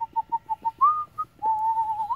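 A person whistling: a run of quick short notes, about six a second, then a higher note, a brief note, and one long held note with a slight waver that rises at the end.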